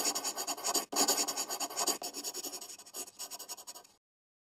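A marker pen scratching across a drawing surface in quick short strokes. There is a brief break about a second in, and the scratching thins out over the last second before stopping.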